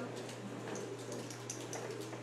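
A Chihuahua's claws tapping faintly and irregularly on a hardwood floor as she hops on her hind legs, over a steady low hum.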